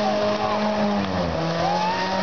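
Ford Escort's engine held at high revs during a burnout, the revs dipping briefly about a second in and picking back up, with the spinning rear tyres squealing.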